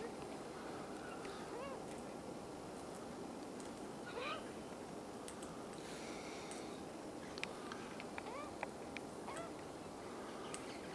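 Faint, short up-slurred bird calls, one every few seconds, over a steady hiss of outdoor background noise, with a few light clicks in the second half.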